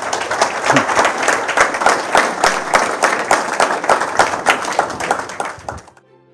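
Audience applauding: many hands clapping densely and steadily, cutting off abruptly near the end.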